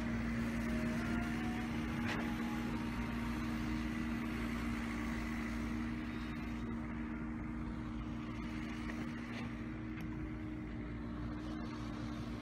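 Engine of land-levelling machinery running steadily: a constant hum over a low rumble, easing off a little about halfway through.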